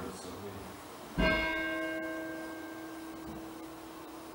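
A bell struck once, about a second in, its ringing tone fading slowly over the next few seconds. It is rung at the consecration during the Words of Institution of the communion liturgy.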